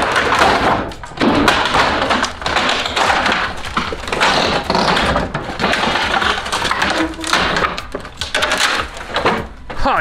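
Old wooden boathouse boards cracking, splintering and scraping as a winch cable drags the wall apart, a dense run of cracks and knocks over a steady low rumble.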